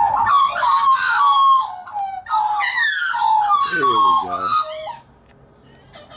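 Australian magpies, an adult and its juveniles, calling together in a loud chorus of overlapping warbling, gliding calls mixed with harsher squawks. The chorus stops abruptly about five seconds in.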